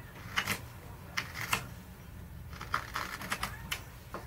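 Carving knife cutting a small wooden decoy piece by hand: a series of short, sharp shaving cuts at irregular intervals, in small clusters.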